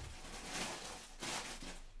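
Faint rustling noise that swells twice, the sound of things being handled or of clothing moving.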